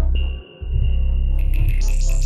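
Electronic soundscape music with a deep, steady bass drone that cuts out for a moment about half a second in, while a thin high tone sounds above it. Glitchy, crackling high textures come in near the end.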